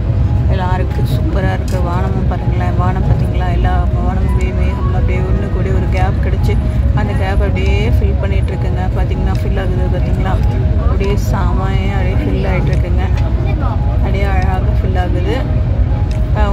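Steady low rumble of a moving vehicle heard from inside, with voices and music over it.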